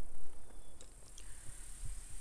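Steady high-pitched buzz of insects in the background, with a low rumble on the microphone that is loudest near the start and dies down.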